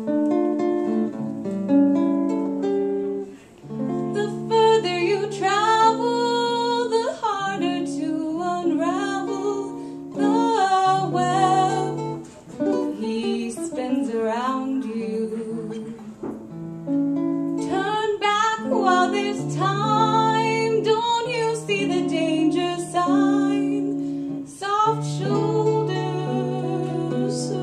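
A woman singing a jazz ballad, holding and bending long notes, accompanied by a guitar playing chords and single notes.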